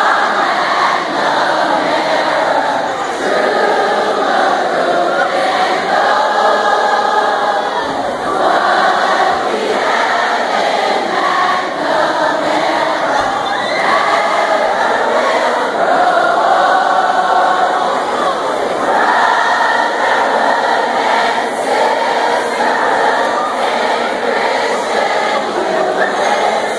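A large crowd of high-school students singing their school's alma mater together, in long held notes that change about once a second.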